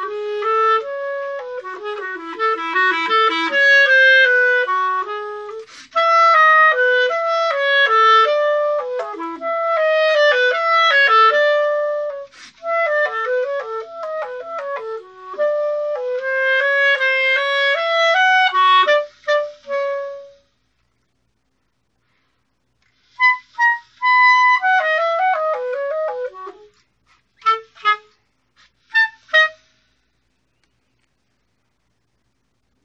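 Solo clarinet playing fast running passages of notes, then a pause of about two seconds, a short phrase, and a few short detached notes near the end.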